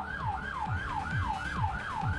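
Siren in a fast yelp pattern, about four quick falling sweeps a second.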